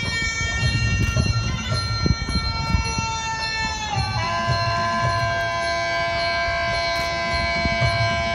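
Traditional Muay Thai wai kru ring music (Sarama): a Thai reed oboe (pi) holds long, nasal notes that slide down to a lower note about four seconds in, over a steady beat of hand drums.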